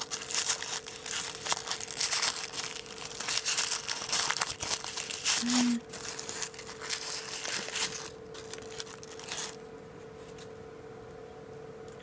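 Tissue paper crinkling and rustling as it is unwrapped by hand. It stops about three-quarters of the way through.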